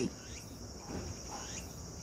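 Faint, steady high-pitched insect chirring.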